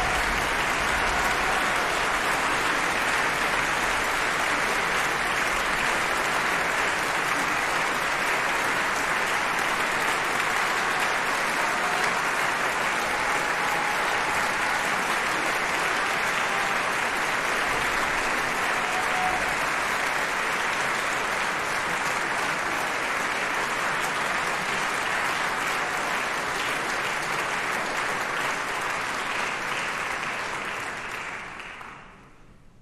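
Theatre audience applauding, a thick steady clapping that eases slightly near the end.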